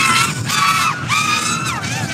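5-inch FPV racing quad on a 4S battery, its motors and props whining under hard throttle as it flies laps. The high-pitched whine holds fairly steady, dips about a quarter-second in and falls again near the end.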